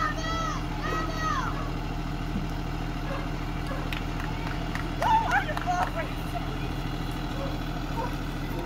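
A stopped school bus's engine idling with a steady low hum, a child's voice heard briefly in the first second and another short voice about five seconds in.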